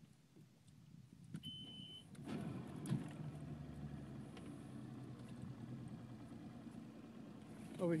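A short steady beep, then a boat's outboard motor starting about two seconds in and running steadily at low speed as the boat moves off.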